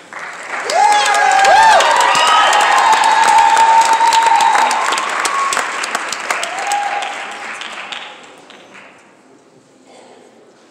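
Audience applauding and cheering, with high-pitched whoops over the clapping. It swells within the first second and dies away about eight or nine seconds in.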